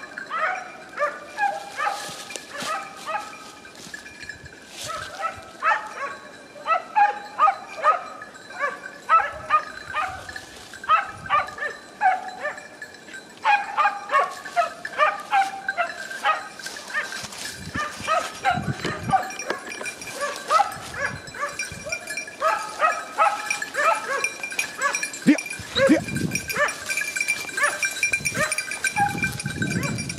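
A pack of hunting dogs baying during a wild boar drive: many short, pitched calls from several dogs overlap and repeat without a break, the sign of the hounds on a boar's scent or chasing it through the cover.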